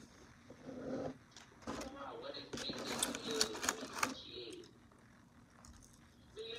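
Indistinct, low talking mixed with quick clicking mouth sounds of someone eating, thickest in the middle and dying down near the end.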